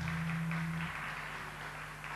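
The last chord of a song on an acoustic guitar dying away, its low notes stopping about a second in, with light audience applause.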